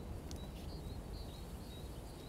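Quiet lakeside ambience: a low steady rumble with a few faint, high bird chirps.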